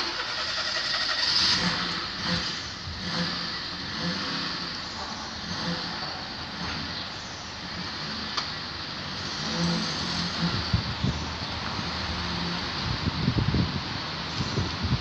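An engine, out of sight, starts suddenly and then keeps running with a steady rushing noise and a faint low hum that comes and goes.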